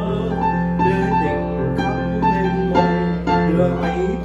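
Digital piano playing solo, a melody line over sustained chords and bass notes.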